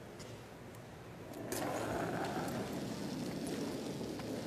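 Quiet curling-arena hum, then from about a second and a half in a louder rumbling, as a granite curling stone is set sliding over the pebbled ice.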